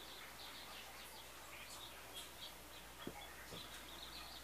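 Faint, high-pitched chirping that repeats several times a second, with two soft clicks about three seconds in.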